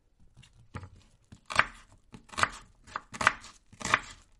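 Knife slicing red onion on a plastic cutting board: about five sharp chops, roughly one a second, each blade stroke cutting through the onion and tapping the board.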